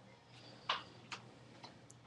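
A flower bracelet being handled: four faint, light clicks spread over two seconds, the first the loudest.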